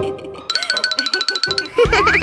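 Cartoon background music with comic sound effects: a fast run of high, evenly repeated notes, then a quick rising glide near the end.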